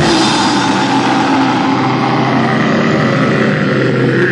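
Live heavy rock band playing loud, distorted electric guitars holding a sustained, droning chord.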